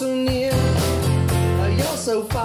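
A live pop-rock band playing: strummed acoustic guitar, electric bass and drums, with a steady beat.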